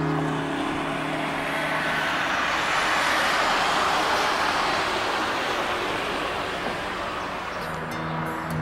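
Road traffic passing on a boulevard: a swell of tyre and engine noise that builds to a peak around the middle and then fades away. Soft background music drops under it at the start and comes back near the end.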